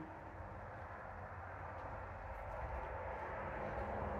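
Road traffic passing close by: a steady rumble of vehicle noise that slowly grows louder.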